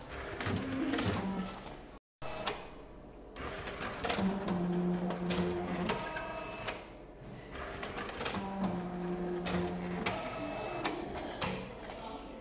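Bank statement printer at work: a run of clicks and rattles from its paper handling, with two stretches of steady motor hum of about two seconds each, one near the middle and one toward the end.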